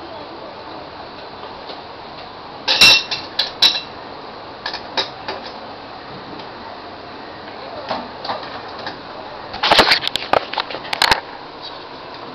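Metal kitchen utensils clinking and knocking against each other: two bursts of several sharp, ringing clinks, about three seconds in and again near ten seconds, over a steady background hiss.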